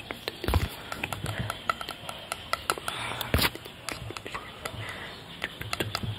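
Scattered light clicks, taps and rustles from gloved hands handling a thin tool close to the microphone, with two soft thumps, one about half a second in and one a little past the middle.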